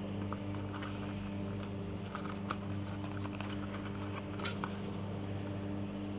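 Light crinkles and small clicks of a cardboard headlamp bulb box being handled and turned in the fingers, the sharpest click about four and a half seconds in, over a steady low hum.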